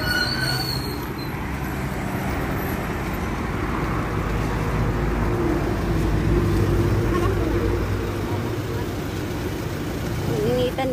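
A car on the road, its engine and tyres making a steady low rumble, with faint voices in the background.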